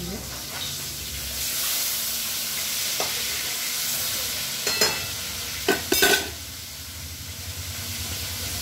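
Food frying and sizzling in a wide metal pan on a gas stove while a spatula stirs it. The hiss of the frying swells about a second and a half in. Several sharp scrapes and knocks of the spatula against the pan follow around five to six seconds in.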